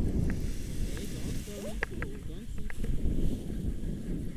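Wind rumbling on the camera microphone as a tandem paraglider launches, with a few short high ticks near the middle.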